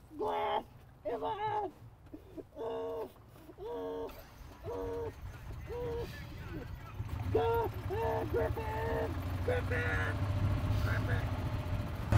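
A person's voice giving short repeated moaning cries, about one a second, each on a steady pitch. In the second half a low rumble, the golf cart running, grows under them.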